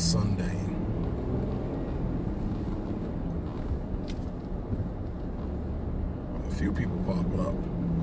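Steady low road and engine rumble of a moving car, heard from inside the cabin.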